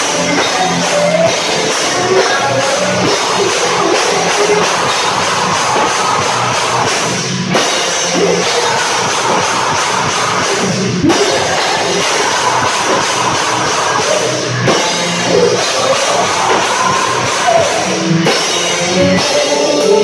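Rock band playing live and loud, with drum kit and distorted electric guitar.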